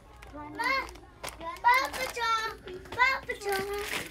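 A young child's voice talking in short high-pitched phrases, with no words the transcript could catch.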